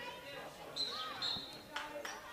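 Players' calls carrying across a field hockey turf, with a short shrill high-pitched sound about a second in, then the sharp clack of a hockey stick hitting the ball near the end.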